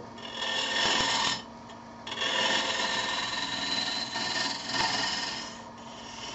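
A turning gouge cutting a spinning maple spindle blank on a wood lathe, rounding over its profile. There are two cuts, a short one and then a longer one from about two seconds in, over a steady hum.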